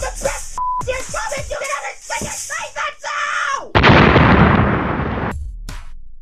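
A voice over music with a short beep near the start, then, about two thirds of the way in, a sudden loud explosion sound effect that dies away over a second and a half, followed by the beats of electronic music.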